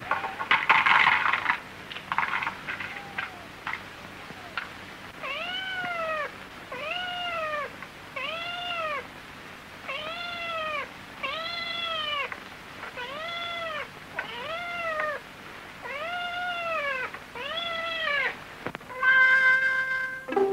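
A cat meowing over and over, about eleven evenly spaced meows, each rising and then falling in pitch, heard on an old film soundtrack with background hiss. A short burst of other sound comes about a second in, and music starts up near the end.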